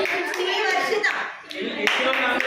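Hand clapping from a small group of people, with voices talking over it.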